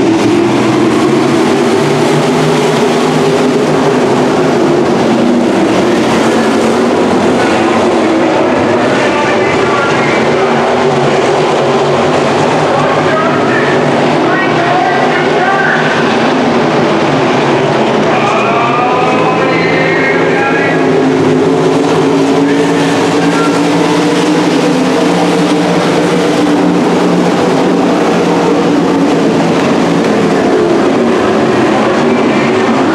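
A field of winged dirt-track sprint cars racing, their V8 engines running at high revs in a loud, steady drone that wavers as the cars circle the oval.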